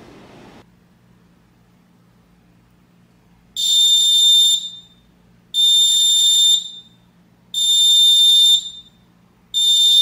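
Fire-Lite ES-50X fire alarm control panel's piezo beeper sounding a high-pitched pulsing tone, four beeps of about a second each, one every two seconds, starting a few seconds in. The panel is sounding trouble after power-up, here for a missing battery, from a beeper that had been thought defective and comes to life only temporarily.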